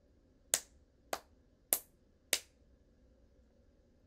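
Four sharp hand snaps struck evenly, a little over half a second apart, keeping a steady four-count beat.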